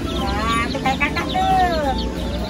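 Chickens calling: a run of pitched calls, the longest one falling in pitch near the end, over the faint high peeping of chicks.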